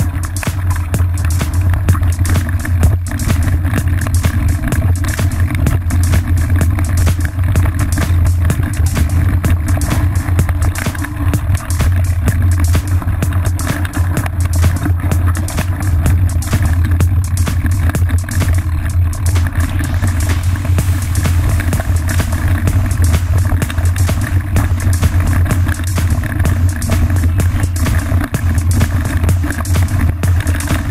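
Background music with a steady, loud low bass line running throughout.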